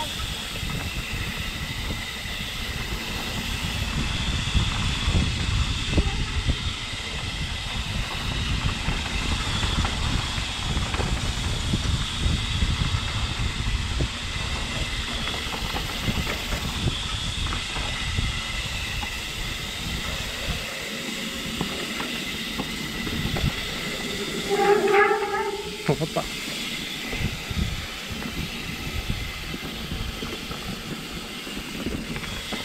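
Mountain bike riding fast down a dirt singletrack: tyre and trail rumble with wind on the microphone, and a steady high whir running through most of the ride. The rumble eases after about 20 seconds, and a brief pitched sound comes about 25 seconds in.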